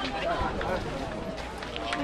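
Indistinct voices of people talking, several overlapping, with no clear words.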